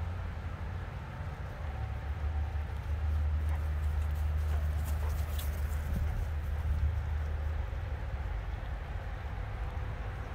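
Footfalls of a person and a large dog trotting on grass, over a low rumble on the microphone that is heaviest in the middle.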